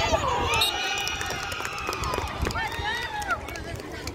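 Several voices shouting and calling out during a kho kho chase, with one long, high, drawn-out shout running from about half a second in to about two and a half seconds.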